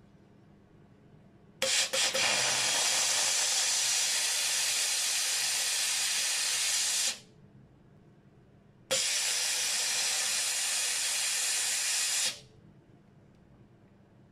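Steam cleaner nozzle releasing steam in two bursts of hiss, the first about five seconds long and the second about three and a half, each starting and stopping sharply, with a brief sputter as the first begins.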